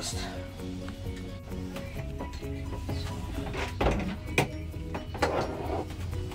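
Background music with melodic notes over a steady bass line, with a few brief noises around the middle.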